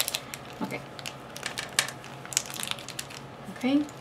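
Small objects being rummaged through and handled: a scattered series of light clicks, taps and rustles at irregular intervals.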